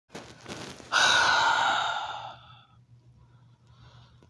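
A person breathes in and then lets out a long, loud sigh about a second in, which fades away over about a second and a half.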